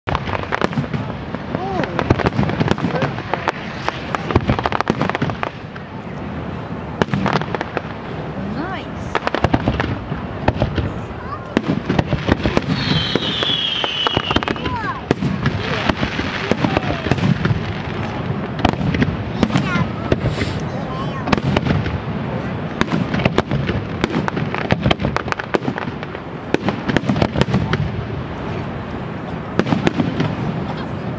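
Fireworks finale: aerial shells bursting in rapid, near-continuous bangs and crackling, with a high whistle falling in pitch around the middle.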